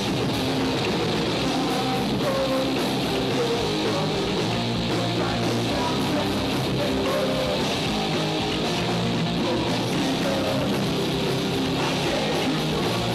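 Live heavy rock band playing loud and steady, with electric guitars and drums, in a metal/punk style.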